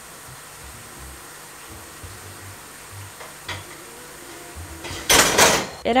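A faint, steady sizzling hiss from the stove, then about five seconds in a short, loud clatter as a ceramic plate is set down on the metal rack inside a steaming stockpot.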